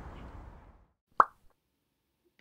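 Background noise fading out during the first second, then a single sharp pop a little past a second in, the loudest sound.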